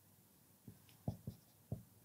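Marker pen writing on a whiteboard: four soft taps of the pen against the board, the loudest about a second in, with faint squeaks of the tip between them.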